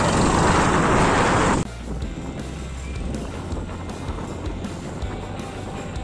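Wind rushing over the microphone with a motorcycle running underneath while riding, cut off abruptly about a second and a half in. Quiet background music follows.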